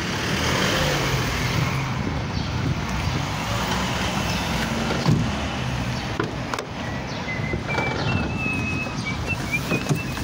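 Street traffic noise, with a single sharp thump about five seconds in and a faint high wavering tone near the end.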